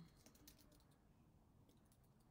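Faint typing on a computer keyboard: a quick run of keystrokes, most of them in the first second.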